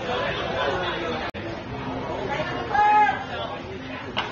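Indistinct voices chattering, with one loud, short pitched call about three seconds in. The sound cuts out for an instant a little over a second in.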